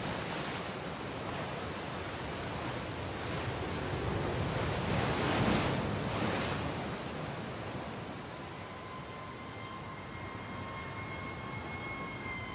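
Ocean surf, waves breaking and washing in, swelling and falling back several times. In the last few seconds a faint steady high tone comes in over the surf.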